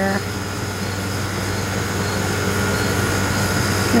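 Outdoor air-conditioning unit running: a steady low hum under an even fan whoosh.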